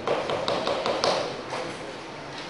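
A quick, uneven series of light taps and knocks, about six in the first second and a half, over a rustling background.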